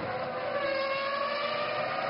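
Formula One car's V10 engine, a steady held note that slowly falls in pitch as the car comes down the straight.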